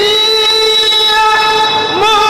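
A male reciter chanting the Quran in tajweed style, holding one long, steady, high note. The note dips and breaks briefly near the end.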